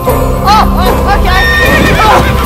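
A horse whinny: a run of quick rising-and-falling cries about half a second in, over background music.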